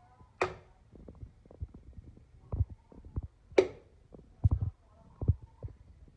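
Machete striking a coconut to cut it open: two sharp, ringing strikes about three seconds apart, with softer dull thuds between and after them.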